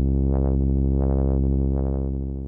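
A modular synthesizer voice holds one steady low, buzzy note while its filter cutoff is modulated by the ChaQuO chaos circuit, so the tone brightens in several irregular swells. The Gain control is being turned, letting the chaos circuit's oscillations through to the filter at a lower level.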